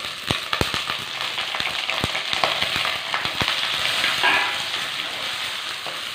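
Chopped onion frying in hot oil in a black clay pot (manchatti), sizzling steadily as a wooden spatula stirs it, with scattered sharp clicks and pops.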